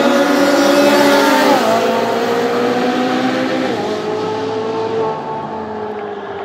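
A Ferrari 458's V8 and a snowmobile accelerating hard from a standing start, the engine note dropping sharply at upshifts about a second and a half in and again near four seconds, and fading as they pull away.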